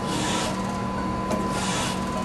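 ACER AGS surface grinder running in automatic cross-feed with its hydraulic table travelling: a steady machine hum with a sharp click followed by a short hiss, repeating about every one and a half seconds.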